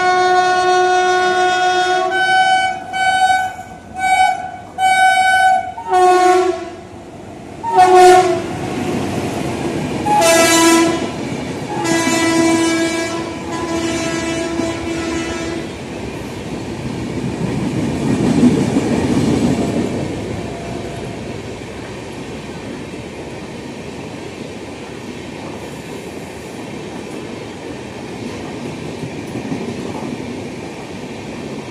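WAP-5 electric locomotive's horn: a long blast, then a string of short blasts, its pitch dropping as the locomotive passes close by. The coaches then rush past with a rumble and wheels clattering over the rail joints, fading toward the end.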